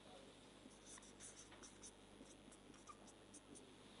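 Marker pen writing on a whiteboard, very faint: a string of short, scratchy strokes starting just under a second in and running for about three seconds.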